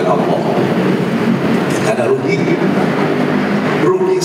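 A man talking into a microphone over a steady rumbling background noise.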